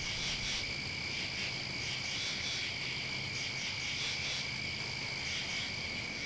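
Night ambience: a steady chorus of frogs and insects, with a continuous high trilling.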